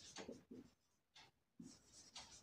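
Faint, short scratching strokes of a marker pen on a whiteboard, with near silence between them.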